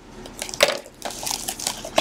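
Plastic shrink-wrap crinkling and tearing as it is cut and pulled off a cardboard trading-card hobby box, in irregular crackles, loudest about half a second in.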